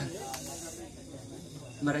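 A pause in a man's speech into a handheld microphone. A drawn-out "uh" trails off, a short breathy hiss follows about half a second in, then low room noise until he speaks again near the end.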